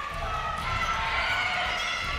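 Steady, even court and crowd noise of a basketball game in a gym.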